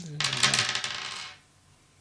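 A handful of small plastic six-sided dice thrown onto a hard table top, clattering and tumbling for about a second before they settle.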